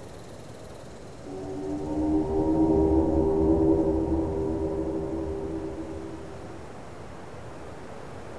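A low, horn-like chord of several steady tones swells up about a second in over a low rumble, peaks, then fades away by about seven seconds, over a steady outdoor hiss.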